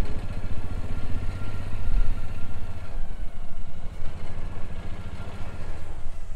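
Engine of a Kawasaki 4x4 utility vehicle (UTV) running at low revs, a steady rapid putter.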